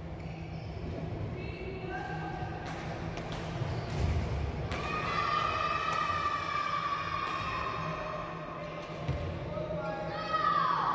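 Badminton rally on a wooden indoor court: a series of sharp racket hits on the shuttlecock and players' footfalls on the floor, echoing in the large hall, with voices mixed in.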